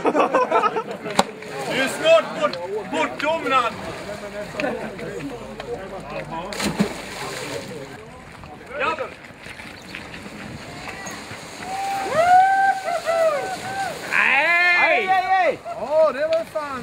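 Water splashing and sloshing around a man being towed on a rope behind a boat, with laughter at the start and loud shouting near the end.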